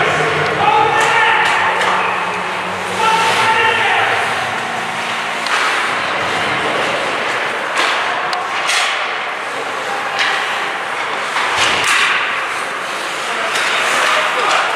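Ice hockey game in a rink: spectators' voices calling out over the scrape of skates on ice, with scattered sharp clacks of sticks and puck.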